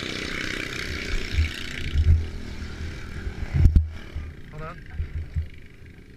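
Small single-cylinder engine of a racing lawn mower running rough and uneven while its carburettor is being adjusted, with irregular low thumps. A sharp knock comes about three and a half seconds in, and the engine sound drops away over the last two seconds.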